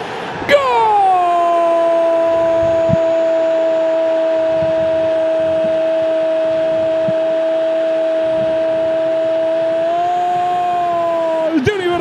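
A Spanish-language football commentator's long held goal cry, one "goooool" sustained on a steady high pitch for about eleven seconds. It lifts slightly near the end before breaking off.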